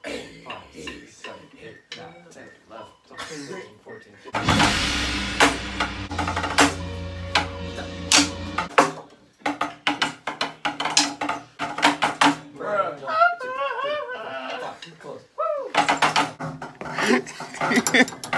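Drumsticks tapping on a board of rubber practice pads in irregular strikes, broken by a loud stretch of music from about four seconds in to nearly nine seconds.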